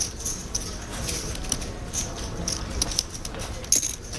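Poker chips clicking together over and over as a player handles a stack of them, in quick irregular small clicks, over a low background hum.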